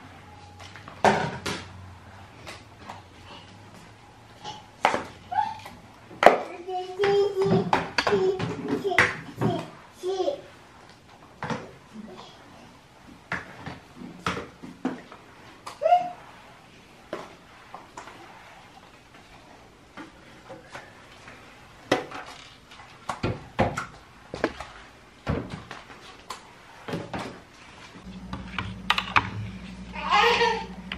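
Flat microfiber mop pushed over a ceramic tile floor, its plastic head giving sharp knocks now and then, while a small child babbles.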